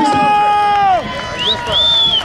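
A man's voice held on one long drawn-out note for about a second, then a spectator's shrill whistle, first a short rising one and then a longer held one near the end, over a crowd at a rodeo ring.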